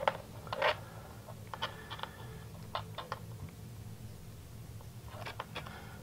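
Faint, scattered plastic clicks and ticks from servo lead connectors and wires being handled and plugged in, over a steady low hum.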